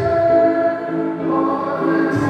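Voices singing a slow hymn together, moving through long held notes.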